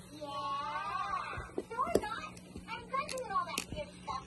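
Scissors snipping through the packing tape and cardboard of a shipping box: a few sharp clicks spread over the last few seconds. A soft voice comes first.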